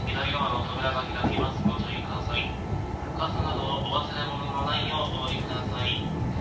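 Kintetsu 2800 series electric train running at speed, heard from inside the car: the high-pitched whine of its resistance-controlled traction motors and gears over the steady rumble of wheels on rail.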